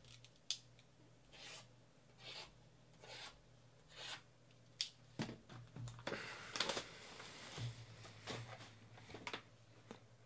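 Plastic shrink wrap being cut and pulled off a cardboard trading-card box, then the box's perforated top torn open. There is a sharp click near the start, then scratchy strokes a little under a second apart, and a longer stretch of tearing about six seconds in.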